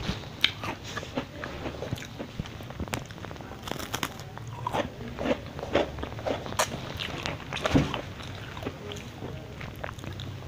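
A person biting into and chewing a thin, crispy kuih kapit (folded egg-wafer 'love letter' cookie), with many irregular crunches and crackles as the wafer breaks in the mouth.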